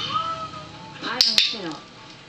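A domestic cat meowing close to the microphone, one falling call about a second in, with two sharp clicks at its start.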